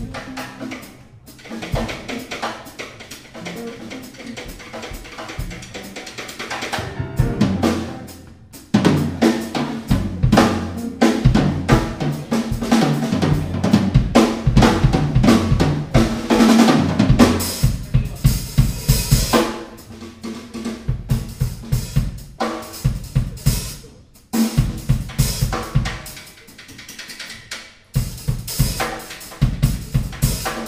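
A live jazz band playing, with the drum kit to the fore (bass drum and snare) over moving bass notes. Softer for the first several seconds, then louder and denser from about nine seconds in.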